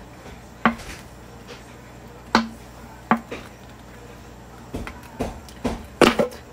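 A thick plastic bottle and a heated metal screwdriver being pressed into its base: a few scattered clicks and knocks, coming closer together near the end as the tip melts through, over a low steady hum.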